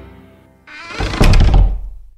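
A door swinging shut, building up and closing with a loud, heavy thud about a second in. The tail of a children's song fades out at the start.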